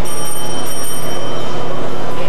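A high-pitched ringing tone with several overtones, starting suddenly and stopping after about a second and a half, over the loud steady din of a crowded room.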